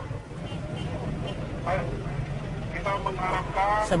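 Voices of people talking in the background over a steady low rumble, as from a street with traffic.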